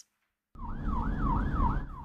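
Police car siren in a fast yelp: a tone that sweeps down and back up about three and a half times a second, over a low engine and road rumble. It starts suddenly about half a second in.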